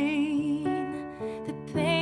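A woman's singing voice holds a long note with vibrato over a soft instrumental accompaniment. The note ends about a third of the way in, the accompaniment carries on alone with a few new notes, and the singing starts again near the end.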